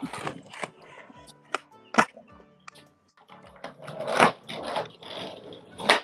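Skateboard clacks and pops on pavement, loudest as one sharp crack about two seconds in, then a rough stretch of board-on-ground noise and more hits near the end, all over quiet background music.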